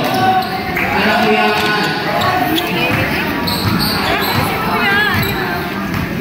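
A basketball bouncing on a hard court during play, a few separate knocks, under people shouting.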